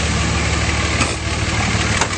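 A 5.9-litre Cummins inline-six turbodiesel idling steadily and smoothly, with an even low rumble. A light click comes about a second in.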